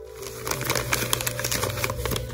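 Tissue and packing paper crinkling and rustling as hands unwrap a small wrapped ceramic piece, in quick irregular crackles that start about half a second in.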